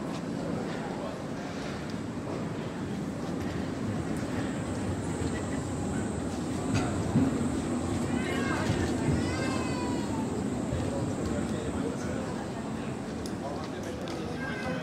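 Busy city-street ambience: chatter from pedestrians walking by, over the low running noise of trams moving along the street beside them. A few high, wavering voice-like calls stand out at about eight to ten seconds.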